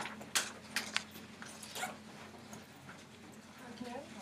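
Scattered rustles and light knocks, several in the first two seconds and a few more near the end, of a classroom of students getting papers out. Between them is quiet room tone with a faint steady hum.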